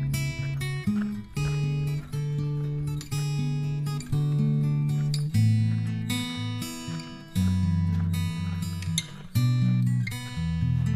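Background music: an acoustic guitar strumming chords, changing chord every second or so.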